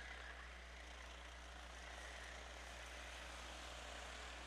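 Faint, steady drone of racing karts' engines on the track, with a low hum underneath.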